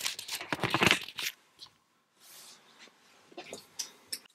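Handling noise: rustling and scraping as the camera is moved across a desk of quadcopter parts, densest in the first second. A short soft hiss follows around the middle, then a few light clicks near the end.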